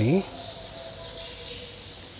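Quiet ambience of a large hall with faint high chirping in the background, after a man's voice trails off at the very start.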